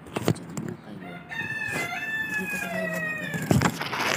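A rooster crowing once: one long call of about two seconds, starting just over a second in. Two sharp knocks come shortly before and right after it.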